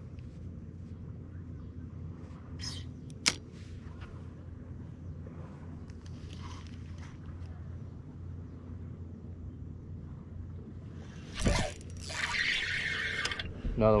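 Steady low hum of a bass boat's electric trolling motor, with a sharp click about three seconds in. Near the end there is a thump, then about two seconds of scratchy noise as the angler sets the hook on a bass.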